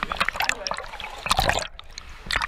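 Water splashing and sloshing close to a camera held at the waterline as a swimmer strokes through the water, in irregular clusters of splashes near the start and again about a second and a half in.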